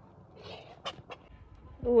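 Faint sounds of domestic ducks foraging in a heap of stove ash and scraps, with a few short clicks about a second in.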